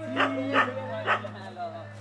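A dog barking three times in about a second, over a steady low hum.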